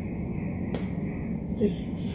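A reflex hammer taps once, a short sharp click, on the forearm near the wrist to test the supinator jerk.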